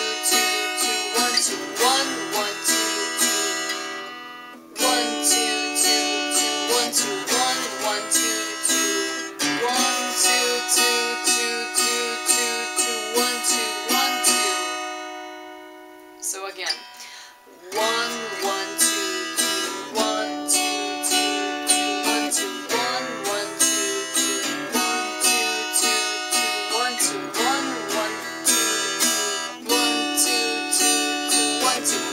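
Cutaway acoustic guitar strummed in a repeating down-up pattern through changing chords. The strumming stops briefly about four seconds in, and again midway, where a chord rings out and fades for a couple of seconds before the pattern starts again.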